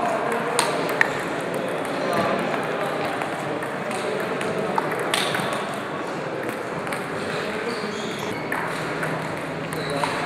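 Table tennis rally: the celluloid ball ticking sharply off the bats and the table at irregular intervals, with voices murmuring in the background.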